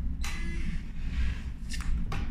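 Fingerprint smart lock handle (Geek Smart L-B200) being touched and pressed down: a rustle with a brief faint tone about a quarter second in, then sharp clicks of the handle and latch mechanism near the end, over a steady low room hum.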